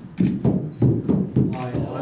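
Several young men's voices shouting and whooping in short excited bursts, a group reacting to a limbo attempt.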